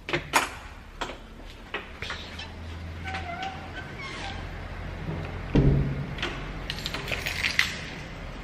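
Handling noise and footsteps from a person walking with a handheld camera: scattered clicks and knocks over a low steady hum, with one heavier thump about five and a half seconds in.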